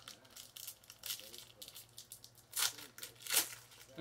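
An NBA Hoops trading card pack's wrapper being torn open and crinkled by hand, a run of short rips with the loudest two about two and a half and three and a half seconds in.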